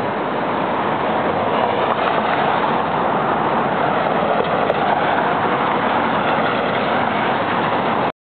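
Steady city street traffic noise, an even wash of passing vehicles that keeps on without a break.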